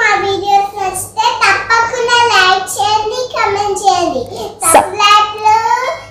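A young girl singing in a high voice, in short sung phrases that glide and hold in pitch.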